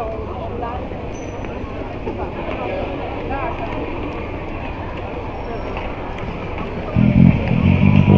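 Chatter of many people in a busy pedestrian square, with a car driving slowly past. About seven seconds in, a five-string electric bass through a small 30 W amp starts playing, its loud low notes taking over.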